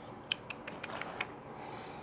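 About half a dozen light, irregular clicks in the first second and a half, over a faint background hiss.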